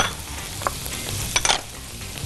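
Grated onion and diced peppers sizzling in oil in a frying pan while being stirred, with two short clicks of the utensil against the pan, one about a third of the way in and one near three-quarters.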